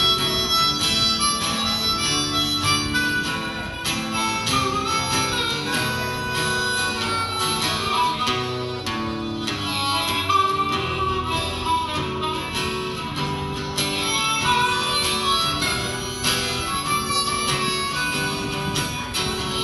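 Harmonica playing an instrumental solo over acoustic guitar accompaniment.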